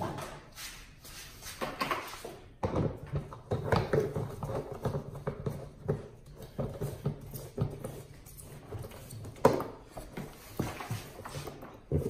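Irregular handling knocks and clicks as a cordless drill is picked up and fitted into the drive hub of a Ridgid FlexShaft drain-cleaning machine, with a sharper knock near the end.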